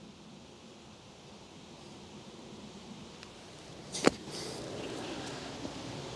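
A bunker shot: a golf club strikes into the sand and splashes the ball out, one sharp short hit about four seconds in, followed by a faint hiss.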